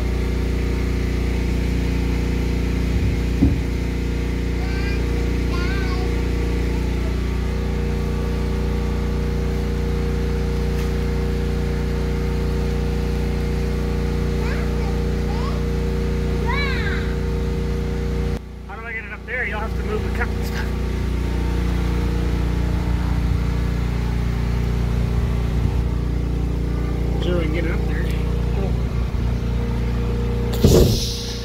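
A steady low machine hum with one unchanging pitch, and short high chirps over it now and then. The hum drops out for about a second a little past the middle.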